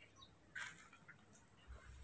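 Near silence: room tone, with one faint short squeak about half a second in.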